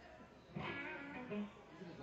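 Guitar played softly on a live band's stage between songs, a few picked notes, with a faint voice under it.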